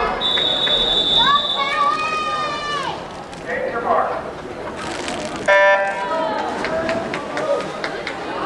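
Swim-meet start sequence over a talking crowd: a long, steady high referee's whistle near the beginning calls the swimmers onto the blocks, and about five and a half seconds in the electronic starting signal gives a short, loud, buzzy beep that starts the race.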